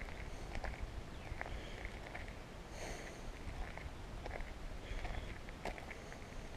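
Footsteps crunching on a gravel track at an unhurried walking pace, each step a short sharp crunch, over a low steady rumble of wind on the microphone.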